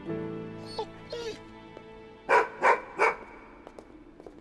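A golden retriever barks three times in quick succession, a little over two seconds in, over soft background music with held notes.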